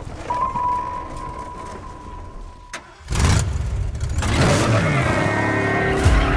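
Trailer sound design: a thin, steady high tone held for about two seconds and cut off by a sharp click, then a loud hit, and the engine of the Ecto-1, a converted 1959 Cadillac ambulance, revving up and rising in pitch as music swells in under it.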